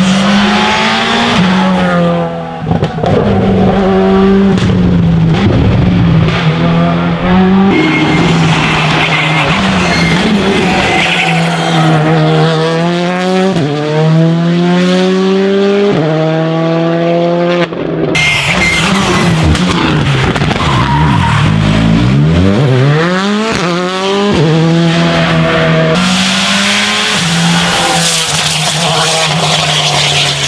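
Škoda Fabia Rally2 rally cars passing at racing speed. Their engines rev hard, rising and falling through the gears with sharp shifts. The sound changes abruptly three times as one car's pass gives way to the next.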